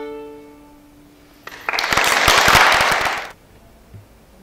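A violin's last held note dies away, then an audience applauds loudly for about two seconds, cutting off suddenly.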